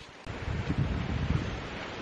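Wind buffeting the camera's microphone: a low, fluttering rumble that comes in about a quarter second in and eases off toward the end.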